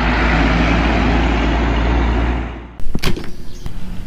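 Real tanker truck driving along a road: low engine rumble with steady road and tyre noise, fading, then cut off suddenly about three quarters of the way through. A single sharp click follows just after.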